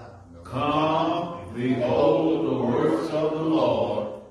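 A group of people reciting scripture aloud together in unison, in a slow, chant-like cadence. The voices start about half a second in and break off briefly at the end of a verse.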